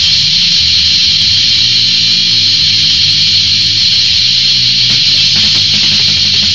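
Lo-fi punk rock recording: electric guitar and steady low bass notes under a bright, hissy top end.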